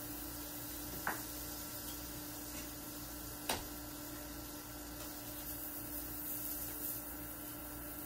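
Steady electrical hum of a portable induction burner heating a grill pan, with two light knocks, about a second in and again a few seconds later.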